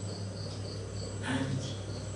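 Insect chirping, short high-pitched chirps about four a second, over a steady low electrical hum.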